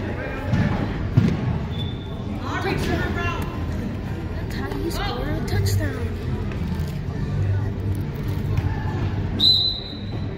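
Echoing gymnasium din of a children's indoor soccer game: scattered children's voices and shouts, with sharp knocks of the ball on the hard floor and walls, the loudest about a second in. Two brief high shrill tones sound, one near two seconds and one just before the end.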